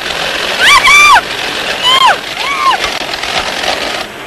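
High-pitched excited whoops, three rising-and-falling cries, the first and longest about half a second in, over a steady rushing noise.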